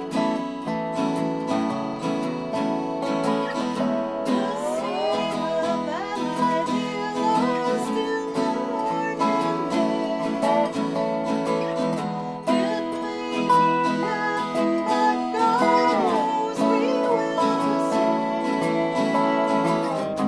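Live acoustic Americana playing: a resonator guitar played lap-style with a slide over a strummed acoustic guitar. The slide makes long gliding notes about five seconds in and again about sixteen seconds in.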